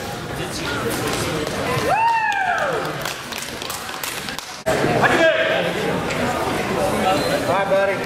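Voices talking in a large, echoing sports hall. About two seconds in, one voice gives a long drawn-out call that rises and then falls in pitch. The sound drops out suddenly for a moment just before five seconds, and the talking picks up again right after.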